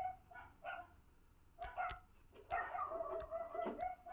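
Faint, drawn-out animal calls: a wavering held tone sounded in several stretches of about a second each. A few light clicks come near the middle.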